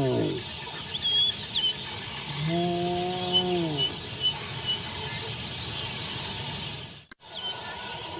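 Spotted hyena giving one long, low whooping call about two and a half seconds in, holding its pitch and then dropping away, while birds chirp in short high notes over a steady chorus of insects.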